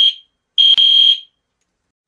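Fire alarm beeping, a high steady tone: the tail of one beep at the very start, then one more beep of about half a second, starting about half a second in.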